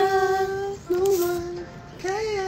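A woman singing unaccompanied, holding two long notes; the second begins just under a second in, after a short break.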